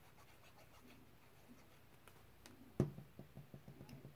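Faint ticks and rubbing of a small paper label being handled and dabbed with glue, then a sharp knock about three seconds in as the plastic Fabri-Tac glue bottle is set down on the cutting mat, followed by a quick run of light taps.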